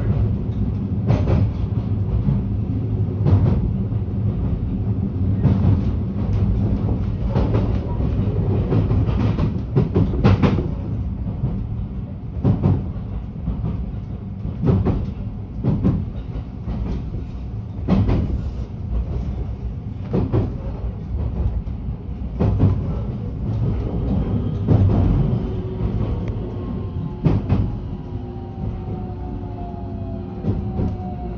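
Train running along the track, heard from inside the carriage: a steady low rumble with a sharp clack from the rail joints about every two seconds. Near the end a falling whine sets in as the train slows.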